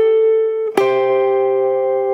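Archtop jazz guitar played slowly: a single picked note rings, then about three-quarters of a second in a double stop (two notes at once) is picked and left to ring.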